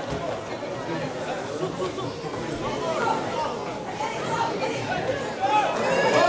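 Indistinct voices calling and chattering across an outdoor football pitch during play.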